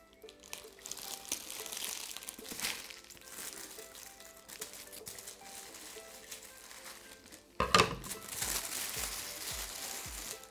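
Plastic wrapping crinkling and rustling as it is cut with scissors and pulled away, with a loud burst of crinkling about three-quarters of the way in. Soft background music runs underneath, and a steady beat comes in near the end.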